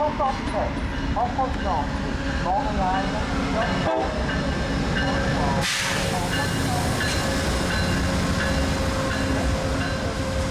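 VIA Rail GE P42DC diesel locomotive rolling into the station at the head of a passenger train, its engine rumbling steadily, with a short hiss of air about six seconds in. A public-address announcement in French carries over the first few seconds.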